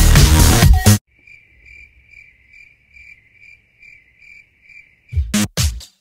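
Electronic dance music cuts off about a second in, leaving a faint, evenly spaced cricket chirp, about two chirps a second: the comedy 'crickets' effect for an awkward, silent wait. Near the end come three short, loud hits.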